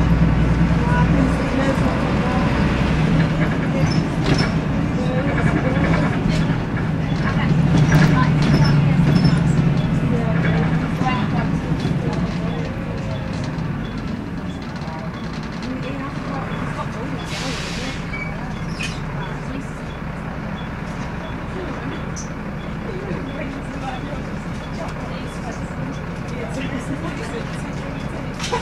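Volvo D7C six-cylinder diesel of a Volvo B7L bus heard from inside the saloon, pulling strongly and peaking about eight to ten seconds in, then dropping back to a quieter, steady running tone. A brief air hiss comes about two-thirds of the way through, with light rattles from the interior throughout.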